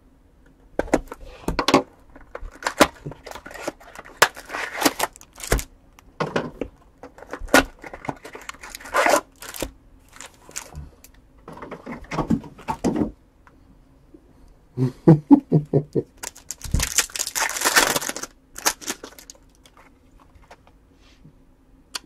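Cardboard trading-card box slit open with a box cutter, then foil card packs handled and torn open: a run of scratches, clicks and crinkles, with a longer tearing rip about 17 seconds in.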